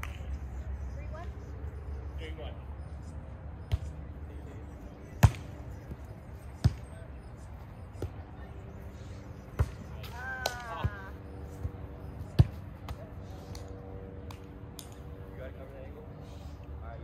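A volleyball rally: a string of sharp slaps as hands and forearms strike the ball, about one every second and a half, the loudest near the start and near the end of the run. A player's short shout comes in the middle of the rally.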